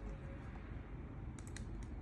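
A quick run of four or five small clicks from the laptop, about a second and a half in, over a steady low background rumble.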